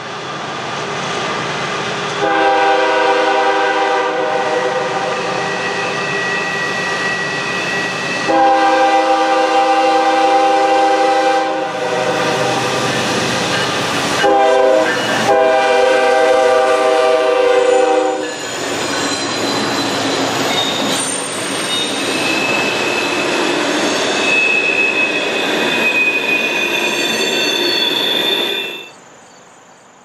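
Norfolk Southern diesel locomotives sounding the horn in a long, long, short, long pattern, the grade-crossing signal, as they approach and pass close by. After the horn comes the steady rumble of engines and wheels on the rails, with thin high wheel squeals as the coal cars roll past.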